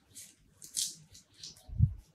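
Large hardcover book being opened by hand: a few short rustles of paper and cover, then a soft thud near the end as the heavy book falls open onto the desk.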